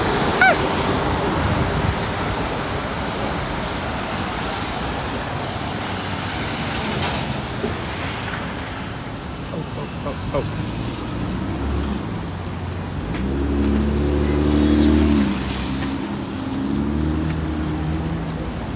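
City traffic noise, steady throughout, with a motor vehicle's engine running close by and loudest about 14 to 15 seconds in.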